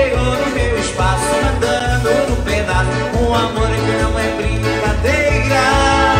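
Live accordion playing over a programmed arranger-module backing track with a steady bass beat, about two pulses a second, and a man singing along.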